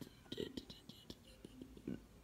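Quiet, with faint whispering.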